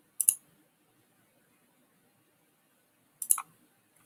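Computer mouse clicks: a quick double click right at the start, then a short burst of about three clicks a little past three seconds in.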